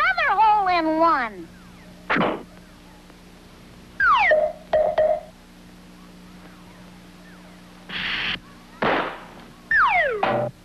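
Cartoon sound effects: a wavering whistle sliding down in pitch, a short thunk about two seconds in, then a falling whistle that settles on a held note, and two short hissing bursts near the end.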